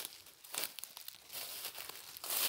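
Dry leaf litter and undergrowth rustling and crackling irregularly underfoot, as someone walks through forest floor covered in dead leaves and palm fronds.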